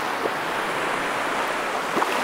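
Ocean surf washing up and back over a sandy beach: an even hiss of foaming water between wave breaks.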